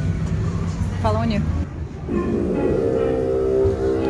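Music with a singing voice: a wavering sung phrase about a second in, then a long held note from about two seconds in.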